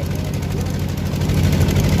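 Motor engine of a wooden river boat running steadily, a continuous low hum.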